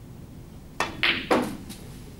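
Snooker shot: the cue tip strikes the cue ball, then sharp ball-on-ball clicks follow in quick succession, three close together starting near the middle and a fainter one shortly after, as the yellow is potted.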